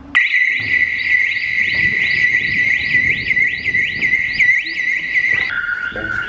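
Electronic alarm sounder going off suddenly: a steady high tone with rapid repeating whoops over it, about three a second. Near the end the tone steps down to a lower pitch.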